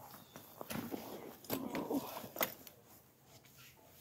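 Faint footsteps and handling noise: soft rustling with a few light clicks and taps.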